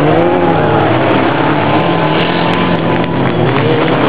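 Engines of several dirt-track race cars running hard, their pitch rising and falling as they rev and pass.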